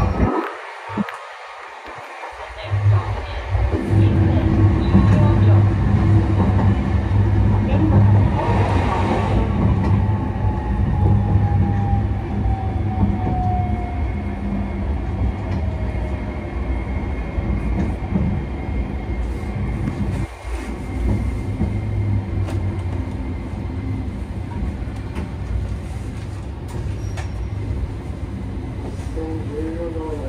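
Running sound of a Sapporo streetcar A1100 low-floor tram heard from inside the car: motor hum and wheels on the rails swell up about three seconds in, then carry on steadily. A faint thin whine slides down in pitch part way through.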